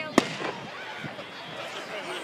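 An aerial firework shell bursting with one sharp bang shortly after the start.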